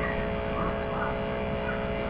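A steady hum made of several fixed tones, over constant hiss, with no speech.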